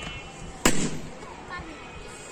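A latex party balloon bursting by hand with a single sharp bang a little over half a second in.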